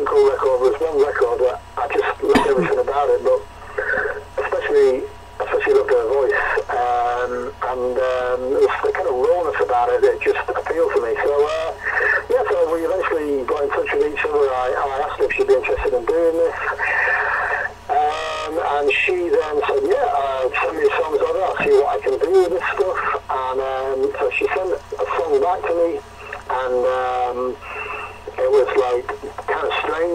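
Speech: a voice talking on without a break, thin and phone-like, as over a call line.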